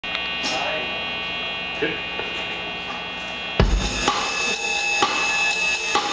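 Live rock band on amplified instruments: steady ringing tones from the amps at first, then a bit past halfway the drum kit, bass guitar and electric guitar come in together loudly, with repeated drum and cymbal hits.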